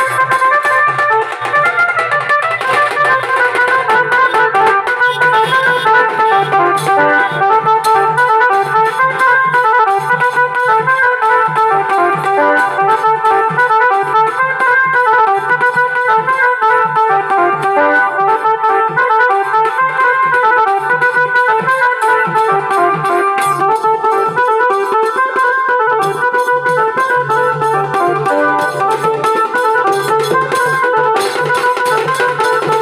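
Bengali wedding band music: a melody played on an electronic keyboard over drums beaten in a steady rhythm.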